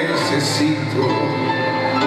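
Live band music: held keyboard chords over a steady low bass note, with no singing.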